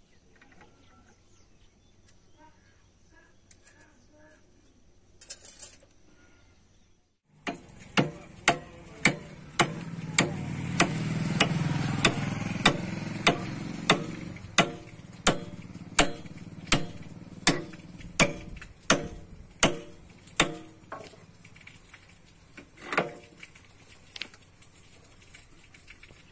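Hammer blows on a steel bar set against the bucket pivot pin of a JCB 3DX backhoe: sharp metal-on-metal strikes, a little under two a second. They start about seven seconds in, run for around fourteen seconds, and end with a few scattered blows. A low rumble swells and fades beneath the strikes partway through.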